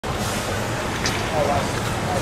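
Busy curbside street ambience: steady traffic and idling vehicle noise with indistinct voices of people nearby.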